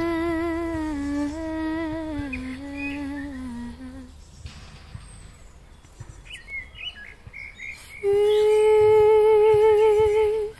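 A woman's wordless light-language singing: long held notes with vibrato that step down in pitch over the first few seconds. After a pause in which birds chirp, a loud, higher held note comes in near the end.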